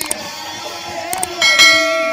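Subscribe-button sound effect: a couple of sharp mouse-clicks, then a bright bell ding about one and a half seconds in that rings on. The stage music carries on faintly underneath.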